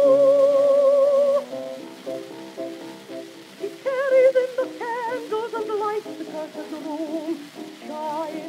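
Old acoustic 78 rpm recording of a contralto voice with piano: a long held sung note with vibrato ends about a second and a half in, the piano carries on alone, and a wavering vocal line comes back in about four seconds in. A faint surface hiss of the record runs under it, and the sound is thin, with no deep bass.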